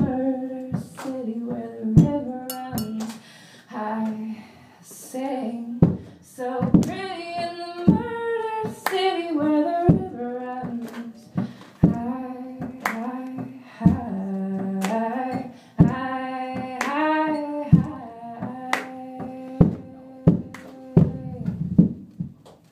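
A woman singing long held notes over an acoustic guitar, with sharp percussive strokes on the guitar about once a second.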